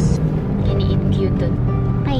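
Steady low road and engine rumble inside a moving car's cabin, under background music, with a few short spoken words.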